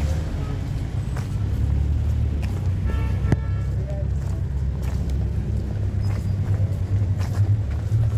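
Street traffic on a city road, heard as a steady low rumble of car engines and tyres, with scattered light footsteps on the pavement. A brief pitched sound comes about three seconds in.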